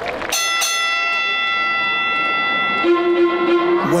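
A bright, chime-like synthesized tone struck twice in quick succession and held for about two and a half seconds, then cut off and replaced by a low steady synth note: the intro of a recorded performance track played over a stage PA.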